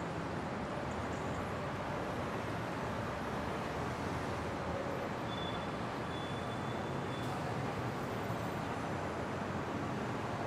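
A steady, even rush of ambient background noise with no distinct events, with a faint high tone for about two seconds midway.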